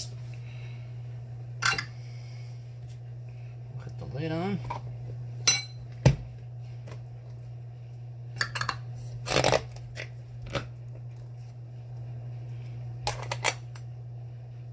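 Scattered clicks and knocks from handling a rock tumbler barrel and fitting its locking lid after the grit and water go in. The loudest is a sharp knock about six seconds in, over a steady low hum.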